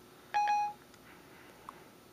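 Siri's end-of-listening chime on an iPhone 4 running ported Siri: one short electronic beep, about a third of a second in and under half a second long, marking that the spoken request has been captured and is being processed.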